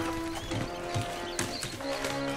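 Film score with long held notes, over rats squeaking and a few sharp clicks.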